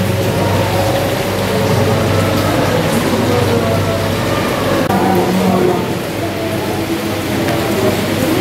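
Steady hiss of artificial rain falling inside a wooden house, over a low hum and indistinct crowd chatter.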